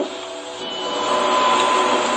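A steady hiss that swells slightly, with a thin steady whine joining it about a second in.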